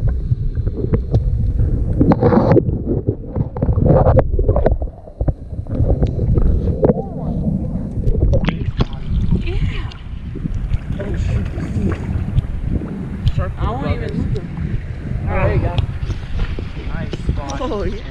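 Steady low rumble of wind on the camera microphone, with water sloshing and splashing against shoreline rocks as a caught fish is grabbed from the water by hand. Indistinct talking comes in during the second half.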